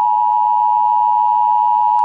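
Emergency Broadcast System attention tone: a loud, steady, high-pitched tone held without a break.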